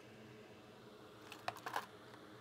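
Faint steady hum with a quick cluster of small sharp clicks about one and a half seconds in.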